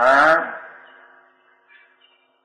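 A man's voice drawing out one word with rising pitch at the start, trailing off within about half a second into a pause with only faint steady background hum.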